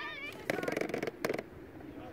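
Young players' high-pitched shouts and calls on a football pitch during an attack, with a couple of sharp knocks.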